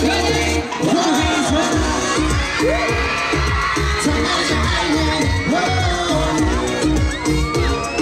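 Live K-pop dance track over a concert sound system, with a steady bass beat. A crowd of fans cheers and screams over it.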